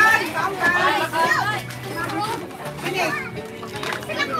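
Children's voices, several at once, chattering and calling out while playing in the water.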